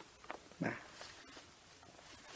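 A pause in speech: faint room tone, broken about half a second in by one short, faint sound.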